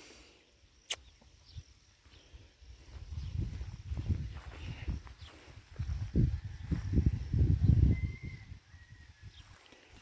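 Footsteps on soft dirt and the rumble of a hand-held phone's microphone being carried, as irregular low thumps. A sharp click comes about a second in.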